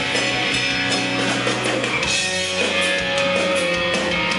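Pop-punk band playing live: electric guitars, bass guitar and drum kit at a steady full volume, recorded from the audience.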